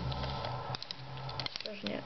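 Faint handling noise with a few small clicks: fingertips pressing plastic tank track links down onto masking tape. A steady low hum runs underneath.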